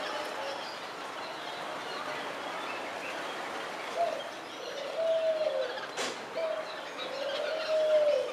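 A crowded aviary of black-headed munias chirping, many small high calls overlapping into a steady chatter. From about four seconds in, a dove's low drawn-out cooing comes in several times, and there is one sharp click about six seconds in.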